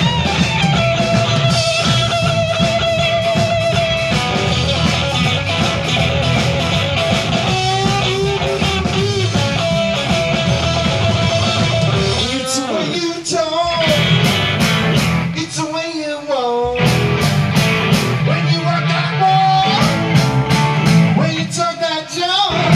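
Live blues-rock band with a Stratocaster-style electric guitar playing a lead solo of held notes with vibrato and string bends over bass and drums. Twice in the second half the low end drops out, leaving the bent guitar notes and sharp drum hits.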